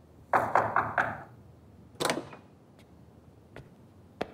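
A short breathy exhale near the start. Then a wooden door with a metal handle is opened: a sharp click about halfway through, and lighter latch clicks near the end.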